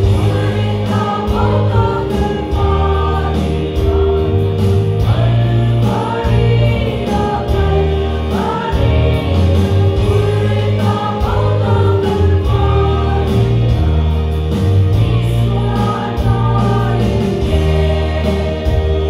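A small group of women singing a Mizo gospel hymn in unison, over an accompaniment holding steady low notes.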